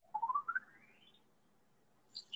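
A short whistle-like tone that climbs steadily in pitch in small steps for about a second, then stops.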